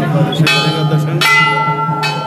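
Brass temple bell struck twice, about half a second in and again just past a second, each strike left ringing on with clear, steady tones over a steady low hum.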